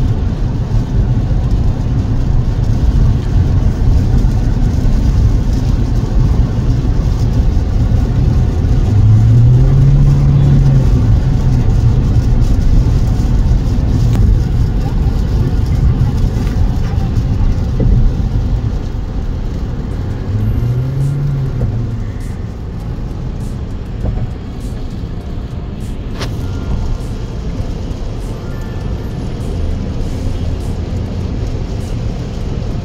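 Cabin noise of a fifth-generation Toyota Prius hybrid cruising at highway speed on a wet road with its petrol engine driving the wheels: a steady low road and tyre rumble, with a low engine hum that rises and falls twice.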